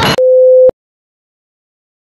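A single steady electronic beep: one pure tone of a single pitch, lasting about half a second and stopping with a click. It comes right after the soundtrack's laughter cuts off abruptly.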